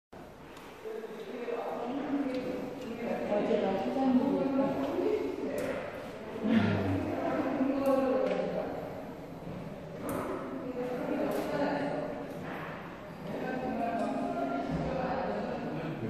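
People talking close by; the voices are the main sound, with nothing else standing out.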